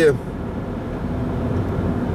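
Steady road and engine noise of a moving car, heard from inside the cabin.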